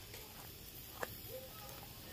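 Faint, steady sizzle of meat cooking over charcoal on a grill grate, with one sharp click about a second in.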